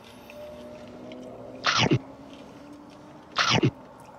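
Two short, loud mouth noises from a person eating, about a second and a half apart.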